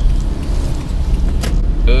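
Steady low rumble of a car's engine and road noise heard inside the cabin while driving, with a single sharp click about one and a half seconds in.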